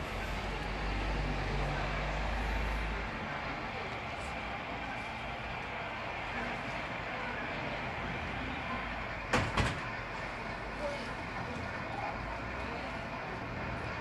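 Steady outdoor street ambience with faint voices, a low rumble in the first three seconds, and two sharp knocks close together about nine seconds in, with a lighter one a second later.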